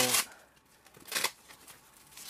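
Rustle of a folded, fabric-covered portable solar panel being handled, with one short rustling burst about a second in and a few faint clicks.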